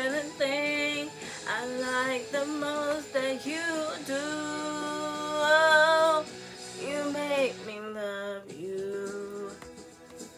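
A woman singing the closing lines of a pop song into a microphone over a backing track, holding one long note in the middle; the singing ends shortly before the end and the sound drops away.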